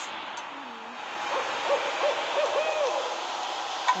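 An owl hooting, a quick run of short hoots in the middle, over a steady hiss.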